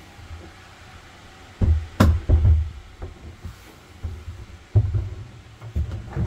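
Hollow plastic water tank being handled down into its floor compartment: dull low thumps and bumps as it knocks against the opening, with one sharp click. The knocks come in a cluster after about a second and a half and again near the end.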